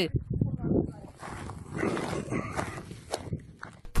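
The field sound of a handheld phone recording made outdoors: faint voices of a group of people talking, over rumbling and rustling noise on the microphone.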